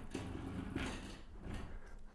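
Soft handling noises as things on a tabletop are moved and adjusted: a few quiet rustles and scrapes.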